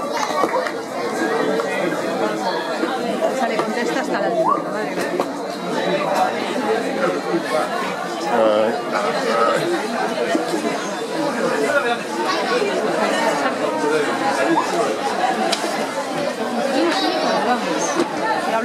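Spectators' overlapping chatter: several voices talking at once at a steady level, none of them clear enough to follow.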